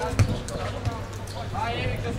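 A football kicked: one sharp thud about a quarter second in, the loudest sound here, and a second, lighter thud nearly a second in. A player shouts near the end.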